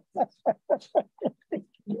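A person laughing in a run of short, falling "ha" bursts, about three to four a second.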